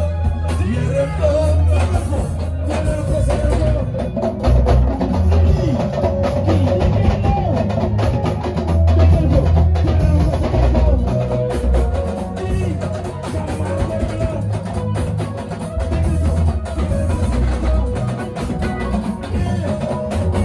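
Live band music with steady, dense drumming over a heavy bass line, played loud.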